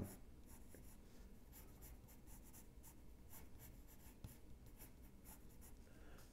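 Yellow wooden pencil scratching faintly on drawing paper in a run of short, uneven strokes as curved lines are sketched.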